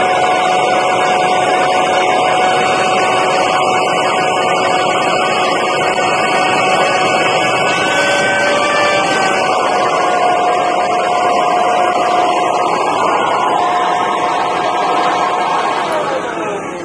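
Small electric blower-vacuum motor running loudly and steadily through its hose, with a held whine that shifts down a little about nine seconds in.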